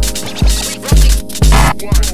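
Live-coded TidalCycles electronic music: a heavily distorted four-on-the-floor kick drum about twice a second, under fast hi-hats and a held minor chord.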